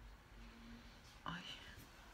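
Near silence: quiet room tone, then about a second in a woman's short, breathy exclamation "Ay".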